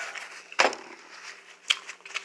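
Mouth sounds of a person eating: a louder wet smack about half a second in and a sharper click near the end.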